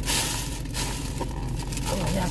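Thin plastic takeout bag rustling and crinkling as it is pulled open and a clear plastic clamshell food container is lifted out, loudest in the first half second.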